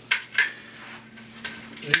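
Injection-molded plastic airsoft helmet being handled and turned over in the hands, with a couple of light clicks in the first half second and then faint rustling.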